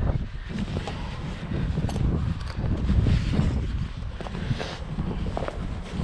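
Wind buffeting a body-worn camera microphone as a low, steady rumble, with a few faint handling and rustling ticks.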